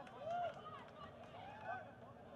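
Faint shouting voices: a few short calls, each rising and falling in pitch over about half a second.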